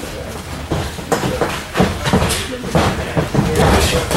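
Boxing sparring in a ring: several separate thuds of gloved punches landing and feet stepping on the canvas, over a low rumble.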